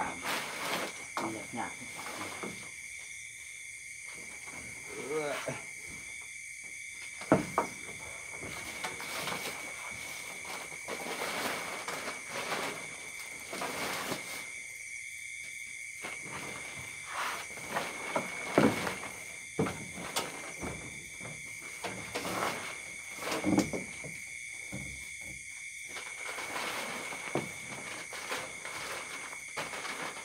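Rustling and handling of a camouflage dome tent and its plastic groundsheet as it is set up, with a few sharp knocks, over a steady high-pitched whine.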